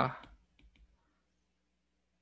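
A man's voice trailing off, then a few faint clicks of a stylus tapping an iPad Pro's glass screen as he handwrites.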